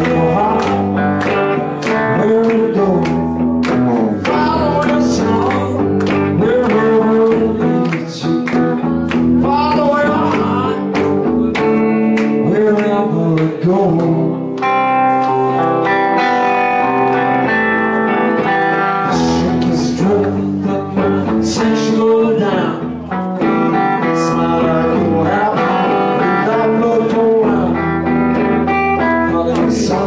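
A live rock band playing: electric guitars and drums, loud and continuous.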